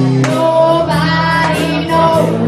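Live blues-rock band playing: a woman singing lead over electric guitars, bass and drums.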